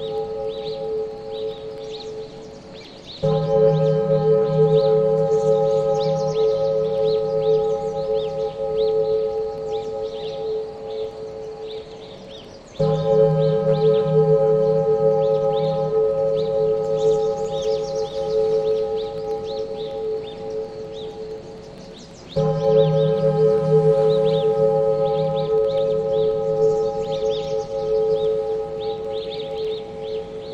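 Meditation music built on a deep, sustained singing-bowl-like tone. The tone comes in suddenly three times, about every ten seconds, and fades slowly between entries.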